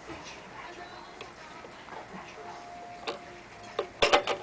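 Light ticking from a vintage Hamm's Beer motion sign's changeover mechanism as its lit picture changes scene, with two sharper clicks near the end. Faint voices and music are in the background.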